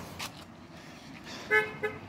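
Two short toots of a horn about a second and a half in, the second briefer, each one steady in pitch.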